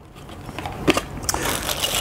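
Cardboard packaging and bagged plastic power-adapter parts being handled: rustling and scraping that grows louder, with a couple of light clicks about a second in.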